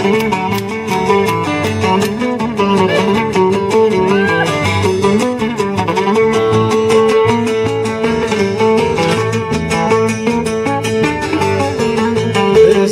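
Instrumental passage of Cretan folk music: a violin playing the melody over two strummed laouta and an acoustic bass guitar, with a steady strummed beat.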